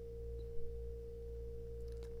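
Steady electrical hum: one constant thin tone over a low buzz, with no other sound.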